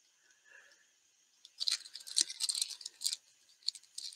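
Handling noise from a ring of picot gauges rattling and clicking against each other, and a plastic needle gauge card being picked up. It comes as a scratchy flurry starting about a second and a half in, with a single knock in the middle and a few more clicks near the end.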